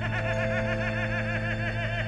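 A rapid cackling laugh: a quick, even run of short 'ha' syllables, each rising and falling in pitch, over a steady low droning chord.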